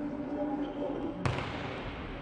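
A volleyball struck hard once during a rally, a single sharp smack a little over a second in, over voices and calls in the arena.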